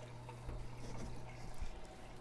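Aquarium water circulation: a steady low hum with a faint trickle of moving water, and a few soft knocks and rustles about halfway through.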